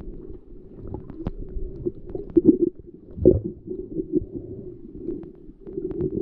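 Muffled underwater sound from a camera held below the sea surface: a low rumble of water moving around the housing, with scattered clicks and a few dull thumps, the loudest about three seconds in.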